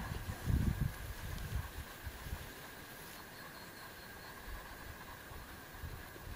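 Hands handling a cloth bag, with low rubbing thumps on the microphone in the first two seconds, then a steady faint hiss with a thin, high, steady tone underneath.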